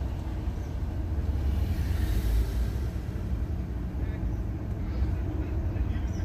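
Steady low rumble of background noise inside a car cabin, with no distinct events.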